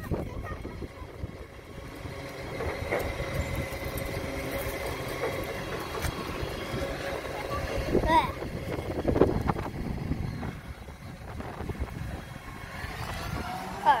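Side-loading garbage truck running at the kerb, a steady whine held over its engine for several seconds, with short high-pitched children's voices about eight and nine seconds in.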